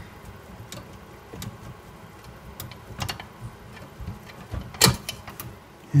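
Scattered small metallic clicks and scrapes as rusted dial lamps are worked out of their sockets on an old Zenith 6S229 radio chassis, with the sharpest click a little before the end.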